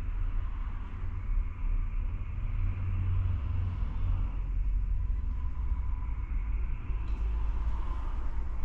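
Steady low background rumble with a fainter hiss above it, unbroken throughout.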